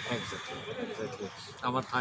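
A man laughing, a quick run of short laughs, with a few spoken words near the end.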